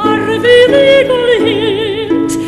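A woman's voice singing a slow, classical-style melody with vibrato, sliding up into a held note, over sustained accompanying chords.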